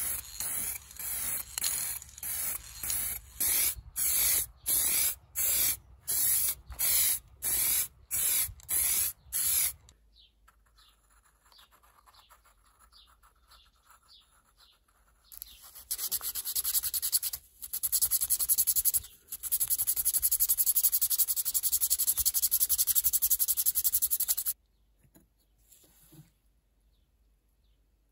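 Aerosol spray paint can sprayed in about a dozen short hissing bursts in quick succession, stopping about ten seconds in. After a quiet gap, a steady scratchy rubbing runs for about nine seconds and then cuts off.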